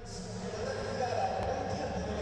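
Indistinct voices over the background noise of a wrestling venue, with a faint click near the middle.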